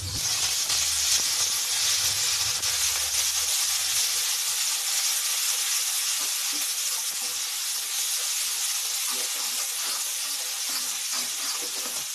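Wet pounded spice paste of green chilli, ginger, mustard seeds and cumin sizzling hard in hot oil in a kadhai as it is stirred with a spatula; a loud, steady sizzle that eases slightly toward the end.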